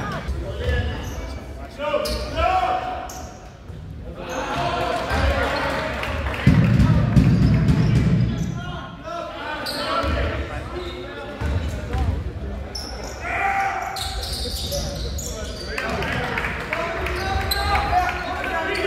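A basketball bouncing repeatedly on a wooden gym floor during play. Indistinct shouts from players and onlookers ring out through the large hall.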